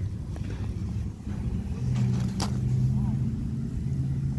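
A low, steady engine hum comes in about a second and a half in, with a single sharp click about two and a half seconds in.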